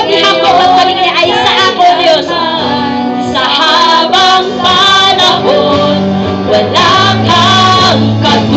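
A woman singing a Tagalog praise and worship song into a microphone, backed by a live band with electric guitar and bass guitar.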